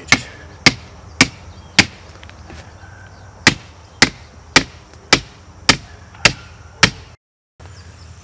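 A hammer striking the top of a rigid PVC fence post, driving it into the ground, with sharp knocks a little under two a second: four blows, a short pause, then seven more. The sound cuts out briefly near the end.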